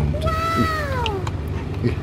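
A single high, drawn-out vocal whine lasting about a second, which rises slightly and then slides down in pitch.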